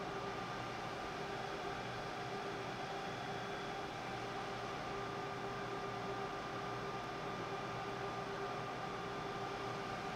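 Steady fan-like hiss with a faint hum at a few fixed pitches, unchanging throughout.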